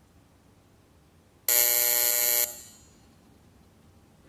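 Plenary voting buzzer sounding once for about a second, a steady electronic tone that cuts off sharply. It signals the opening of a roll-call vote.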